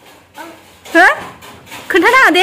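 Two short, high-pitched vocal sounds: one about halfway through that quickly rises and falls in pitch, and another starting near the end.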